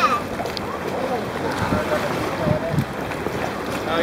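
Wind noise on the microphone and lapping water around a canoe, with faint voices from people in nearby canoes and a few low buffets.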